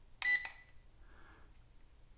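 Toy-drone radio transmitter giving one short, high electronic beep about a quarter second in as a button is pressed.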